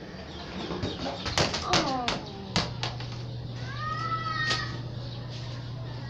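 A young girl's voice calling out in short sliding sounds, with three sharp taps about half a second apart early on, over a steady low hum.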